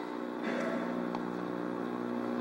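A steady hum made of several even tones, under faint room noise.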